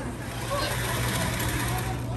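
Steady rush of air with a low hum from the electric blower fan in the base of a clear air-tube exhibit that shoots balls and scarves up the tube, with faint voices behind it.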